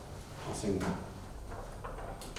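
A quiet room with a faint steady hum and a brief, short vocal sound from a man about half a second in, followed by a faint click near the end.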